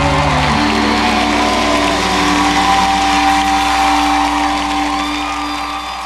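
A live pop-rock band's closing chord held and ringing out, with a cheering crowd, fading out near the end.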